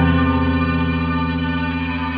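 Instrumental background music: a single held chord with echo, ringing on and slowly fading.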